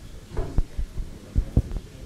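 Several soft knocks and bumps of handling at a lectern, irregularly spaced over a faint room hum.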